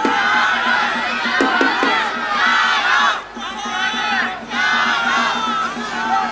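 A roadside crowd of spectators shouting and cheering, many voices at once, in loud surges with two short lulls about three and four and a half seconds in.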